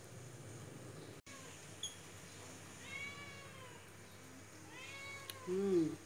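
A cat meowing: two short, high meows that rise and fall, about three and five seconds in, then a louder, lower one near the end.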